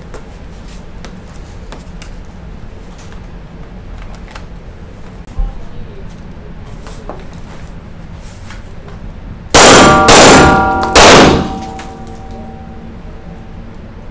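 Three pistol shots fired from the prone position in an indoor range: two about half a second apart, then a third about a second later, each ringing on briefly in the room.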